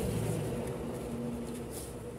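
Steady low mechanical hum in the room, with a few faint short scratches of a pencil being drawn along a ruler on pattern paper.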